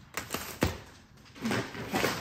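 A few short knocks and clicks from groceries and packaging being handled in a cardboard box, the sharpest about half a second in.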